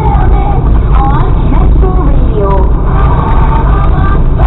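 Car radio playing a voice over music inside the cabin, over the steady low rumble of the car's engine and its tyres on a snow-covered road.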